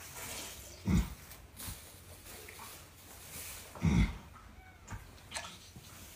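Foaling mare groaning twice, low and loud, as she strains in labour: once about a second in and again about four seconds in.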